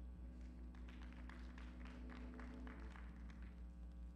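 Faint, scattered clapping from a congregation, several claps a second, over a steady low hum and a soft held keyboard note.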